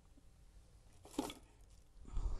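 Quiet room tone broken by one short handling noise about a second in, as something is moved while rummaging under a counter.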